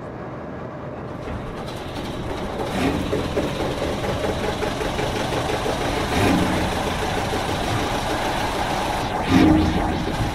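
Steady cabin noise of a jet airliner in flight, engine and airflow heard through the cabin from a window seat, building over the first couple of seconds and then holding even. Faint voices show through it a few times.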